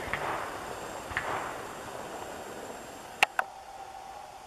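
Faint steady hiss with a few sharp clicks, one about a second in and a close pair near the end.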